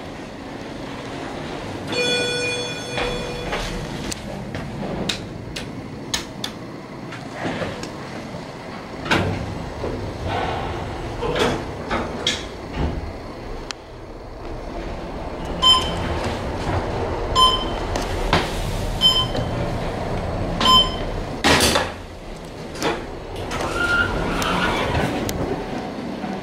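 Schindler 500A elevator in operation: a pitched arrival chime about two seconds in, the doors sliding, and the car running with a low rumble and scattered clicks and knocks. In the second half, four short electronic beeps about a second and a half apart.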